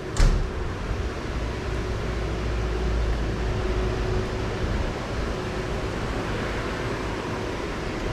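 Steady background noise of a train-station platform: a low rumble and even hiss, with a faint steady hum underneath. A short knock comes at the very start, and the low rumble and hum ease off about halfway through.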